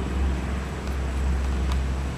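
Steady low outdoor rumble, with a faint tick near the end.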